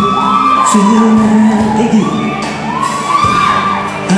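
Live band playing an instrumental passage: electric bass and drums with cymbal splashes under a melody line of sliding, held notes.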